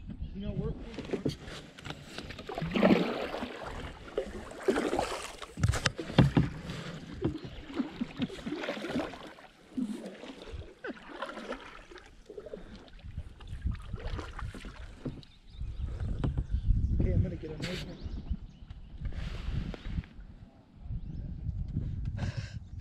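Kayak paddles dipping and splashing in river water in irregular strokes. A low rumble builds over the last few seconds.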